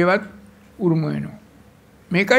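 A man's voice: two short spoken syllables, one at the start and one about a second in, with pauses between.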